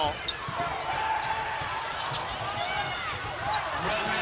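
Arena crowd noise, with a basketball being dribbled on a hardwood court in short, sharp bounces.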